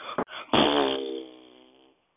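A short rustle and a click, then one drawn-out, buzzy pitched blat starting about half a second in, sinking slightly and fading out over about a second.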